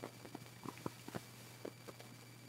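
Faint handling noise: about seven light, irregular clicks and taps as a bread roll is held and turned in the hand.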